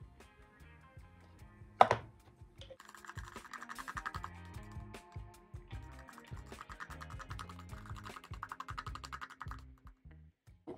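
A brush handle stirring lightening powder and 6% oxide in a plastic tub: quick, rapid scraping and tapping against the plastic, starting about three seconds in and running for several seconds, over background music. A single sharp knock comes a little before two seconds in.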